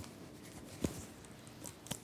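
Handling noise from a clip-on microphone being adjusted: faint rustling with a soft knock about a second in and a smaller one near the end.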